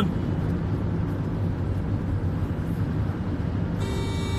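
Steady low rumble of a vehicle in motion, with no other events standing out.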